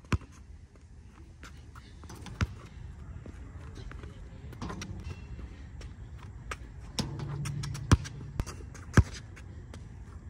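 Basketball bouncing on an outdoor asphalt court during shooting practice: separate sharp bounces spread through, the loudest ones close together near the end.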